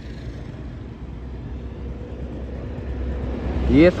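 A bus approaching along the road, its low engine rumble and tyre noise growing steadily louder.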